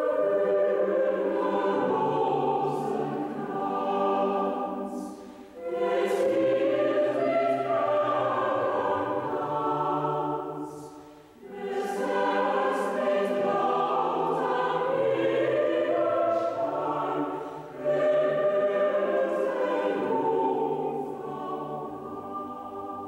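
A chamber choir singing, in long held phrases with a short break for breath about every six seconds.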